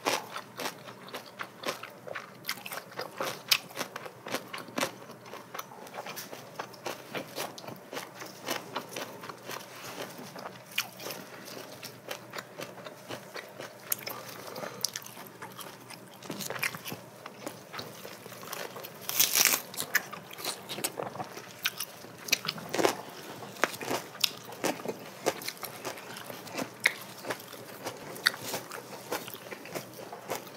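Close-miked eating: two people chewing and crunching grilled pork belly in lettuce wraps with kimchi, full of wet mouth clicks and crisp crunches. A louder crunch comes about two-thirds of the way through.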